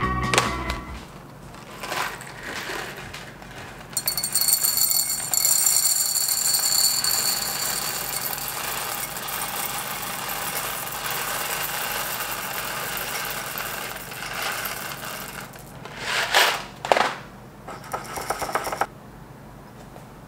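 Roasted coffee beans poured from a bag into a glass jar: a long steady rattling stream of beans on glass for about twelve seconds. Then a few sharp clacks of the glass lid being closed and its wire clamp snapped shut, with smaller clicks after.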